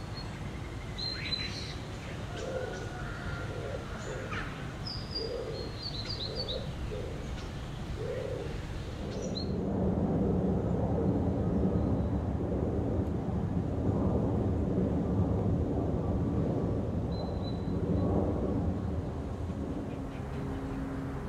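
Small birds chirping in short high calls while a pigeon coos in a run of evenly spaced low notes. About nine seconds in, this gives way to a louder, low, steady street ambience.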